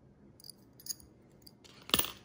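Metal keyring bottle opener clinking faintly as it is handled, then one sharp click near the end as it is set down on a cardboard record sleeve.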